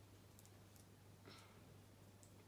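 Near silence: room tone with a low steady hum and a few faint, scattered clicks.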